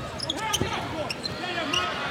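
A basketball being dribbled on a hardwood court, a few bounces, over the voices of the arena crowd.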